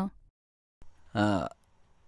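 A line of dialogue ends at the start, then after a short pause comes one brief, low-pitched vocal sound from a man, a murmur or grunt falling slightly in pitch, about a second in.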